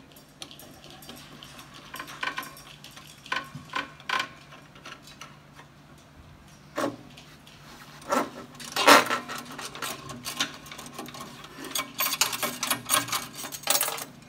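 Metal clinks, scrapes and rattles from a clay target trap's main spring assembly as its blue tension knob is unscrewed and the coil spring worked free. Scattered clicks at first, loudest about eight to nine seconds in, with a dense spell of rattling near the end.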